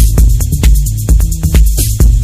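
Techno from a DJ mix: a steady four-on-the-floor kick drum at about two beats a second under ticking hi-hats, with a short cymbal hiss near the end.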